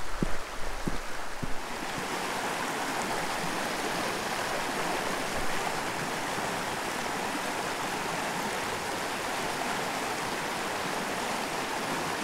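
A small mountain creek running over rocks in a shallow riffle: a steady rush of water. A few faint knocks come in the first second and a half, before the water sound settles in.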